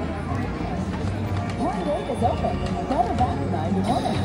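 Music playing over the steady chatter and hum of a busy casino floor.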